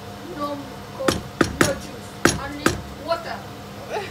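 Wooden spoon knocking against a frying pan: five sharp knocks between about one and three seconds in.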